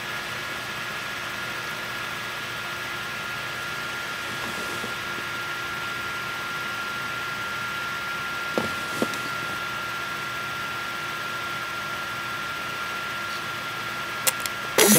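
Steady background hiss with a faint, constant high whine, and two small clicks a little past halfway.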